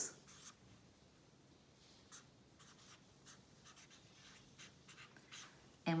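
Felt-tip pen writing on lined notebook paper: a run of short, faint, irregular strokes as letters and symbols are written.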